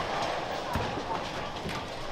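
Bowling alley din: steady background chatter of many people with scattered knocks and thuds, a couple of them standing out about a third of the way in and near the end.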